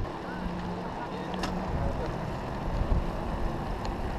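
Mountain bikes rolling on asphalt in a group: a steady low rush of wind and tyre noise on the bike-mounted camera's microphone.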